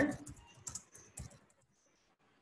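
Typing on a computer keyboard: a handful of scattered keystrokes, mostly in the first second and a half.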